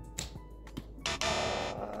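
Background music, with the sharp snap of a bowstring released from a hand-drawn bow about a quarter second in. About a second in comes a louder, harsh sound lasting most of a second.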